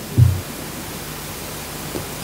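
Steady hiss from the amplified sound system or recording, with a short low hum-like sound about a quarter second in.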